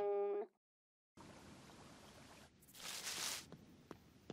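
A held note cuts off about half a second in, followed by a second of silence. Faint ambient hiss then fades in, with a short rushing swell of noise in the middle and a couple of faint ticks near the end.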